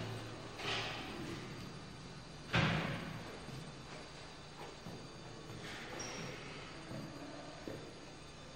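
A single loud thump about two and a half seconds in, fading briefly afterwards, with a softer knock under a second in, over steady tape hiss.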